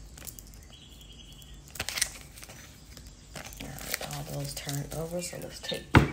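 Crinkly rustling handling noise, with a sharper rustle about two seconds in. In the second half a person speaks quietly, too low to make out words.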